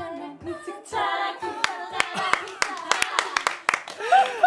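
A few people clapping by hand, about four or five claps a second, after the music stops, with voices calling out over the first claps.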